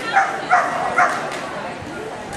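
Dalmatian barking three times in quick succession, the barks about half a second apart.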